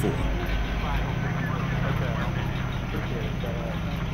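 A vehicle engine idling with a steady low hum, under faint, indistinct voices.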